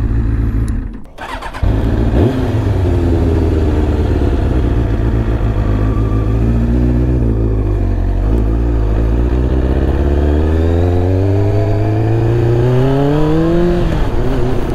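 Kawasaki ZZR600 inline-four motorcycle engine running as the bike pulls away, with a brief gap about a second in. Its pitch wavers at low speed, then rises steadily as it accelerates near the end.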